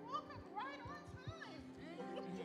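Soft background keyboard music holding steady chords, with a small child's high voice babbling in short rising-and-falling sounds over it.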